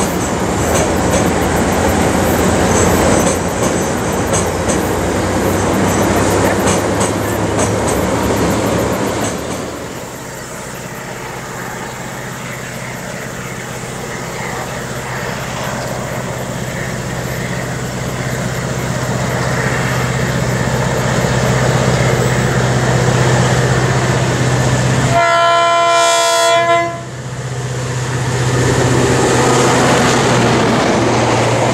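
A train's wheels clicking and rumbling across a steel truss bridge for the first ten seconds or so. Then the V8 diesel locomotive DBR 1254 approaches with a steady engine drone that grows louder, sounds its horn for about two seconds near the end, and comes past close with its carriages rumbling behind.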